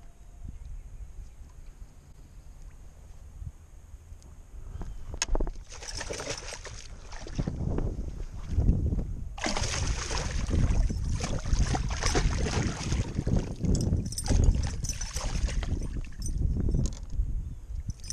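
A big largemouth bass thrashing and splashing at the surface beside a boat hull as it is brought in and lifted out by hand. The splashing starts about six seconds in and becomes louder and nearly continuous from about halfway through.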